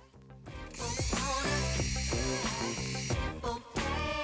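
Power drill boring a quarter-inch hole into a black plastic sink drain pipe for a drain saddle, a high-pitched whir that starts under a second in and stops about three seconds in. Background music plays throughout.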